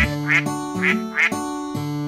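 Cartoon duck quacking four times, in two pairs of quick quacks, over a children's-song instrumental backing.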